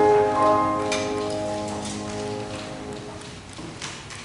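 A piano's closing chord rings out and slowly dies away at the end of the piece. There is a short paper rustle just before the end.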